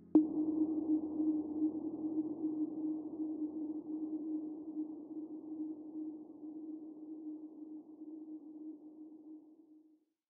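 A single held low electronic tone with a hissy wash over it, starting on a sharp click and slowly fading away to silence: the closing note of the background music.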